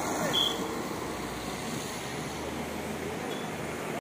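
Road traffic passing: car and motorbike engines and tyre noise with a steady low hum, and a brief high tone about half a second in.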